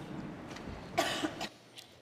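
Faint rustling of people settling into their seats, then a single short cough about a second in.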